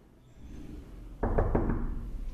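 Knuckles knocking on an interior door, a quick run of several raps starting just after a second in.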